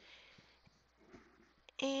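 Faint rustling of cotton fabric being folded and smoothed by hand on a wool pressing mat, with a couple of soft clicks. A woman's voice starts near the end.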